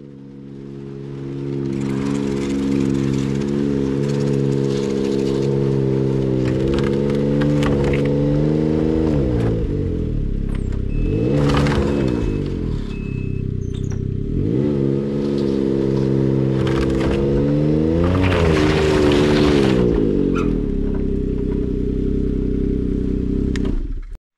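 Ski-Doo snowmobile with a three-cylinder four-stroke Rotax 900 ACE engine running at low speed as it is driven up onto a trailer. It revs up and back down twice, about halfway through and again near the end, then stops abruptly.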